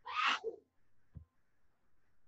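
A person sneezing once, a short sharp burst right at the start, followed about a second later by a faint thump.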